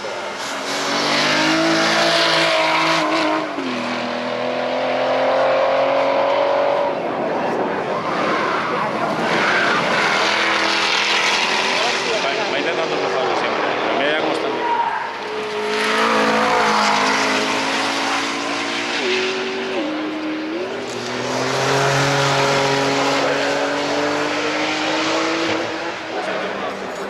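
A succession of high-performance supercar engines, including the Aston Martin CC100 and the Jaguar F-Type Project 7, accelerating hard past one after another. Each engine note climbs as it revs, then drops sharply at an upshift, a few times over, and swells loud as each car goes by.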